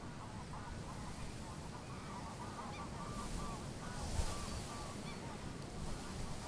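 A flock of geese honking, many short calls overlapping one another, over a low rumble of wind, with a brief low thump about four seconds in.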